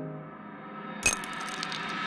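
Background music holding a sustained chord, with a single sharp metallic strike about a second in that rings on brightly.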